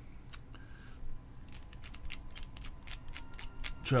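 Childproof cap of a 30 ml glass e-liquid bottle being worked by hand, giving small plastic clicks: two separate ones, then a quicker irregular run of about five or six a second from about a second and a half in.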